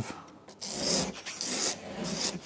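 A razor blade scraping across the paint of a car boot lid, lifting the clear coat, which looks broken down. One rasping stroke starts about half a second in and lasts about a second, and another begins near the end.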